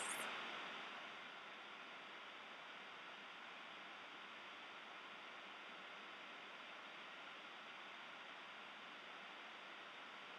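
Faint steady hiss of background noise, with no distinct sounds.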